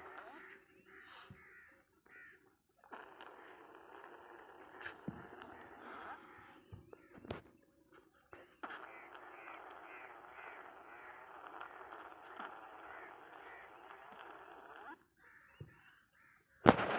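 Faint birds calling outdoors, with a run of quick repeated calls, about two a second, through the middle, and a couple of sharp clicks.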